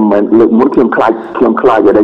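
A man talking continuously into a microphone. This is speech only.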